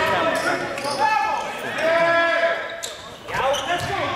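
A basketball being dribbled on a hardwood gym floor during play, with players and spectators calling out over it, all echoing in a large gym.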